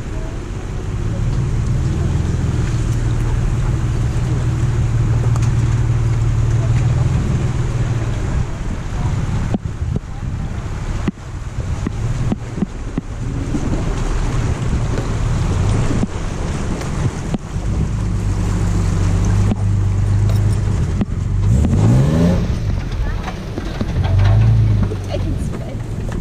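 Off-road 4x4's engine working in low gear through a shallow stream crossing and up the rutted bank, its note dipping and rising with the throttle, then revving up about two seconds before the end.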